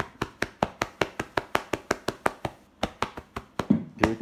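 Handheld microphone tapped rapidly by hand, each tap picked up by the mic as a sharp knock, about six taps a second with a short break about two-thirds of the way through.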